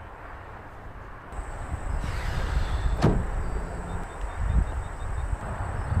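A car hood being lifted open, with a scrape about two seconds in and one sharp click about a second later, over a steady low rumble.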